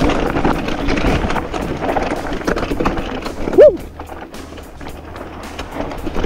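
Mountain bike rattling down a rocky trail: tyres crunching and knocking over loose stones, the bike clattering with each hit. A short whoop of the rider's voice about three and a half seconds in, and the rattle quieter over the last two seconds.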